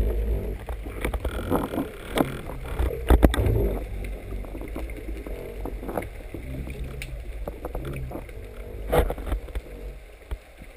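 Muffled underwater noise picked up by a speargun-mounted camera in its waterproof housing: a steady low rumble of water moving past, with knocks and thumps from the gun being handled, the loudest about three seconds in and again near the end.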